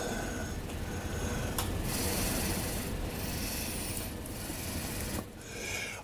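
Steady rustling, rubbing noise close to the microphone, brightest in the middle and fading near the end.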